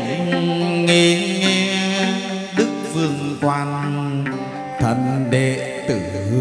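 Chầu văn ritual music: a drawn-out melody of long held notes that slide in pitch, over a sustained accompaniment.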